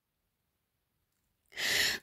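Dead silence, then about a second and a half in, a short audible intake of breath just before speech resumes.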